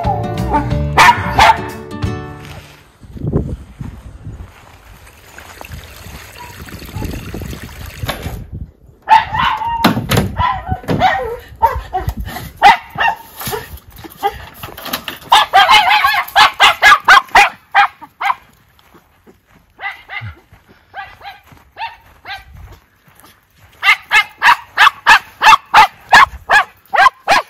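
Miniature schnauzers barking excitedly in fast runs of short, high barks, starting about nine seconds in, with a short music jingle at the very start.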